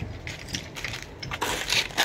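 Marble slabs clicking and knocking against one another as they are handled for loading, with a longer scraping stretch about one and a half seconds in.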